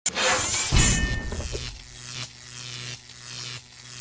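Animated network logo sting: a loud crash sound effect at the start with a heavy low hit about a second in, then a short jingle with steady bass notes and a regular beat.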